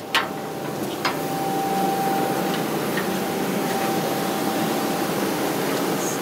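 Steady workshop machinery noise, a loud even hum and hiss with a faint thin whine over it for a few seconds, following two sharp clicks, the first just after the start and the second about a second in.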